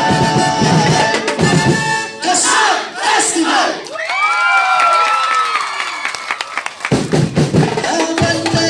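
Festival drum-and-percussion music that breaks off about two seconds in, giving way to a group of voices shouting and a long drawn-out cry that falls in pitch; the drumming comes back in about a second before the end.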